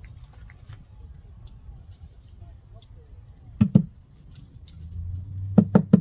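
Hands and a small garden trowel working loose potting soil in a wooden planter box, with faint scratching and scattering. There are two knocks about three and a half seconds in and three sharper, louder knocks near the end, over a steady low rumble.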